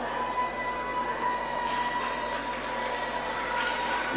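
Faint held keyboard notes: one steady high note, with more notes joining about halfway, over a low background hiss.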